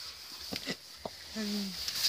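A short, low closed-mouth "mm" from a person, preceded by a few faint clicks in an otherwise quiet pause.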